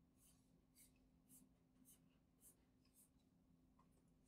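Very faint scratching of a stylus nib stroking across a drawing tablet surface while inking line art, in short strokes about twice a second.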